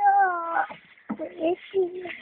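A young boy's voice: one drawn-out, high call that falls slightly in pitch for about half a second, followed by a few short bursts of speech or babble.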